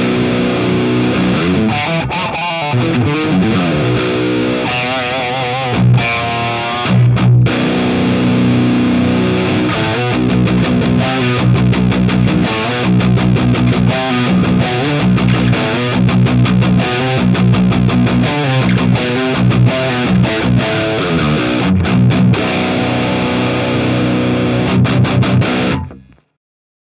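Heavily distorted electric guitar played through a Synergy IICP preamp module, which models the Mesa/Boogie Mark IIC+ amplifier. Wavering, bent lead notes in the first several seconds give way to tight stop-start riffing, and the playing cuts off abruptly just before the end.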